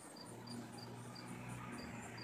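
A cricket chirping faintly and evenly, about three short high chirps a second, over a low steady hum.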